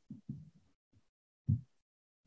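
A quiet pause broken by a few brief, soft, low vocal sounds from a woman: murmured hesitations near the start and one more at about one and a half seconds.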